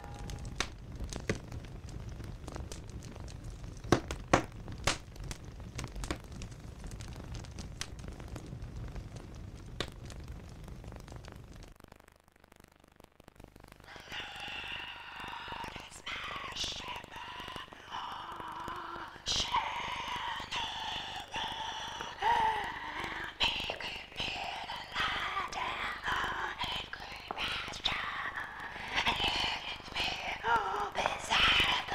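Crackling of burning fire, many sharp snaps over a low rumble, for about the first twelve seconds. After a short lull, a person's voice is heard from about fourteen seconds in.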